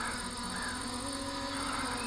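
Faint, steady hum of the MJX Bugs 5W quadcopter's brushless motors and propellers as it hovers, the pitch wavering slightly as it holds position.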